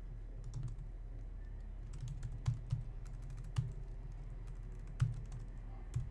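Typing on a computer keyboard: irregular, scattered key clicks with a few sharper strokes, over a steady low hum.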